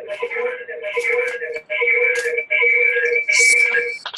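A horrible, loud electronic noise on a conference-call line: a fixed chord of steady tones that keeps breaking off and coming back about once or twice a second, with hissy flares on top. It is an audio glitch from a participant's phone line as it is taken off mute.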